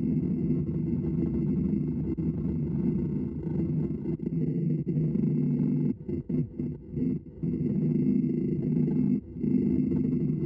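Wood lathe running with a bowl gouge roughing the outside of a green pignut hickory bowl blank, a steady rough cutting noise with a faint steady high whine. The cut breaks off in a few short gaps a little past the middle and once more near the end.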